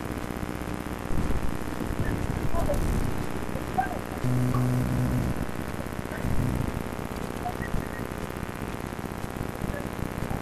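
An open telephone line with the handset set down at the far end: rough, muffled line noise with faint distant voices. About four seconds in, a low steady hum sounds for about a second, and it comes back briefly near six seconds.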